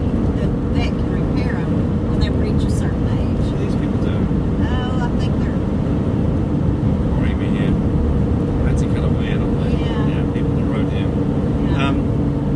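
Steady road and engine noise inside the cab of a van-based motorhome driving along, a low rumble with a steady hum, heard from inside the cab. Voices talk quietly over it at times.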